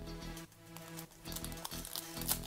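Quiet background music with held notes, with a few brief clicks and rustles from cards and a foil card pack being handled.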